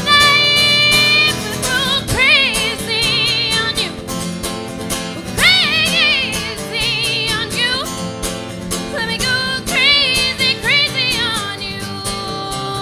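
A woman singing with a strong, wide vibrato, holding long notes and sliding up into swooping runs, over acoustic guitar accompaniment.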